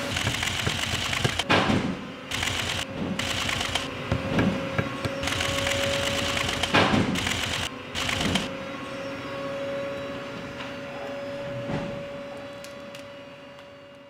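Industrial sewing machines stitching leather shoe uppers in a workshop, a busy run of clattering stitches through the first half. The stitching thins out and fades away over the second half, with a steady high hum held throughout.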